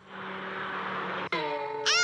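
A rushing whoosh effect lasts about a second and is cut off by a sharp click. A held musical tone follows, playing as the straw bale vanishes in a children's puppet show.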